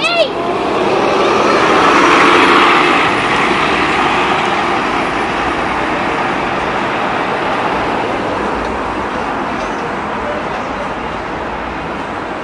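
2019 Nova Bus LFS city bus pulling away from the stop and driving off, its engine and road noise swelling to a peak two to three seconds in, then slowly fading as it goes, amid street traffic.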